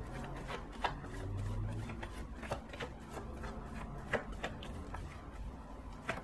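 Deck of tarot cards being shuffled and handled by hand: soft, irregular card clicks and rubbing.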